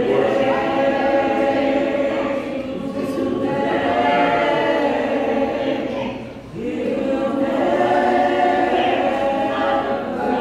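A woman singing unaccompanied in long, held notes, with a brief break about six and a half seconds in.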